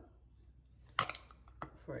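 A brief clink of small kitchen items handled on the counter, a quick cluster of two or three sharp clicks about a second in, followed by a fainter tick or two.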